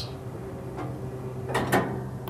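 New Holland Roll-Belt 450 round baler's twine-tube mechanism running as the dual twine tubes swing across: a steady motor hum, with a faint knock just under a second in and a louder short knock about three-quarters of the way through.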